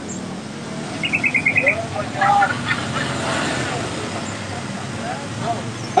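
Street background noise: traffic with a steady low hum that swells and fades around the middle, and faint voices. A quick run of about six short, high chirps comes about a second in.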